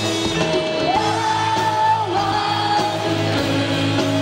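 Live rock band playing, with electric guitars, bass and drums under a woman singing the melody; about a second in she slides up into a long held high note, then a lower one.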